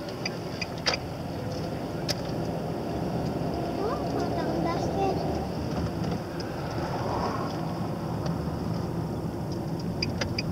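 Steady engine and tyre noise heard from inside a moving car's cabin, with a couple of faint clicks in the first seconds.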